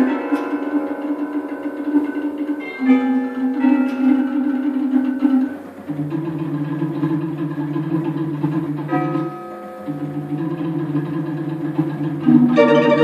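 Barrel organ playing steady, held low pipe notes while metal tubular chimes ring out struck notes over it in an abstract, unmetred piece. The held notes break off twice, at about six and ten seconds in.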